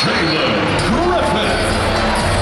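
Arena crowd noise with a voice calling out over it in rising and falling pitch.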